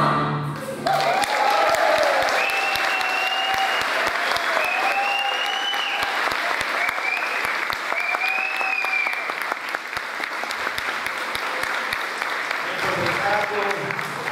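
Audience applauding a choir: the last sung chord dies away in the first second, then steady clapping with a few cheering calls over it, tailing off near the end.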